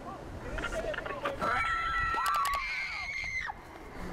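Animated logo sting: sliding, voice-like synthetic tones with a steady held tone and a quick run of clicks in the middle, cutting off about three and a half seconds in.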